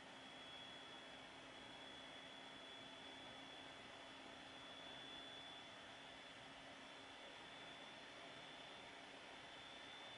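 Near silence: faint steady room and microphone hiss with a thin, constant high whine.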